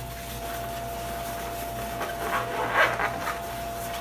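Cloth rustling and rubbing as a datejime sash is wrapped and pulled around the waist over a yukata, with a brief louder rustle just under three seconds in.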